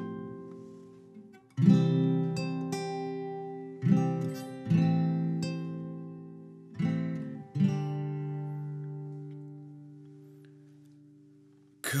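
Acoustic guitar playing slow strummed chords, each stroke left to ring and die away. About five chords fall in loose pairs, and the last rings out and fades over several seconds.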